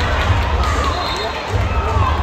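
Basketball arena crowd noise with voices calling out, over a low rumble that comes and goes.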